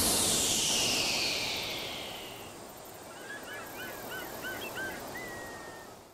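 Electronic music fading out under a falling sweep. It gives way, about halfway through, to a flock of birds calling in many short, overlapping hooked cries, ending with one longer level call.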